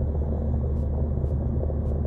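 A steady low rumble with no speech, like the continuous noise of a moving vehicle or wind on the microphone.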